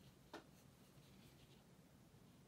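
Near silence. A single faint click comes about a third of a second in, followed by faint soft strokes of an ink brush on paper.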